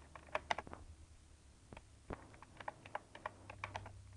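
Computer keyboard keys pressed to move through BIOS setup menus: a quick cluster of clicks early, then a faster run of several keystrokes a second near the end, over a low steady hum.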